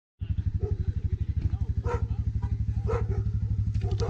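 ATV engine idling, a steady low pulsing of about a dozen beats a second.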